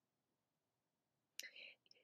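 Near silence: room tone, with a faint short breath-like mouth sound near the end, just before speech resumes.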